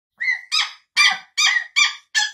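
A gosling and a cockatoo peeping to each other: about five short, high-pitched peeps in quick succession.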